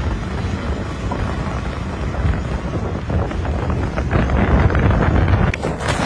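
Strong wind buffeting the microphone outdoors, over the low rumble of a wheel loader's diesel engine as the machine drives past. A few sharp clicks come near the end.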